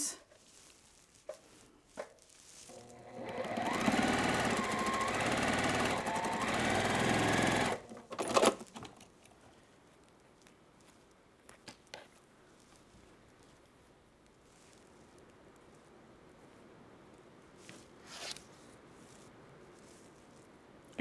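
Juki straight-stitch sewing machine stitching a seam in one run of about five seconds, starting a few seconds in and stopping abruptly, followed by a sharp click. Through the rest, a faint steady hiss of heavy rain on the roof, with a few small clicks.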